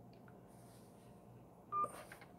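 Near silence, then near the end a single short telephone keypad tone: a key pressed in answer to an automated phone menu, heard over the phone's loudspeaker.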